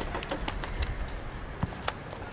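Birds calling over a steady low background rumble, with a few short, sharp clicks.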